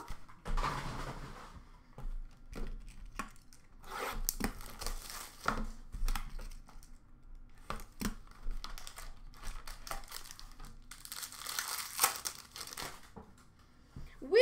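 Hands handling and opening a 2020-21 Upper Deck Ultimate hockey card box: crinkling and tearing of the packaging with scattered taps and clicks, and a longer rustle near the end.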